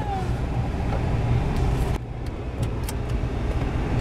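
Steady low rumble of a car's engine and road noise heard from inside the cabin, with a few faint clicks. The sound dips briefly about halfway through.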